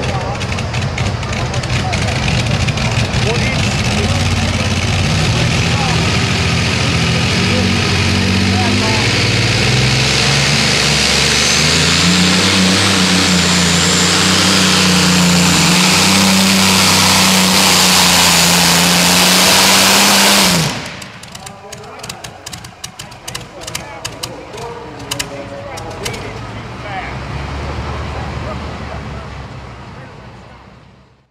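Modified pulling tractor's engine at full throttle pulling the sled. Its pitch climbs over the first ten seconds or so, then holds steady, and the engine sound cuts off suddenly about two-thirds of the way through. What follows is much quieter and fades out at the end.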